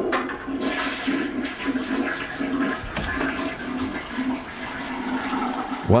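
A toilet flushing: water rushing, starting suddenly and running on at a steady level.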